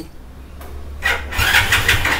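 A Hero Splendor motorcycle's small single-cylinder four-stroke engine starting about a second in. It then runs with a quick, even beat.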